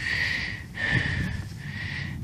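A person's breath through the nose close to the microphone: two long breaths with a short break between them, each carrying a thin whistling note.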